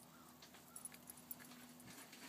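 Near silence, with a faint steady hum and a few faint scattered ticks.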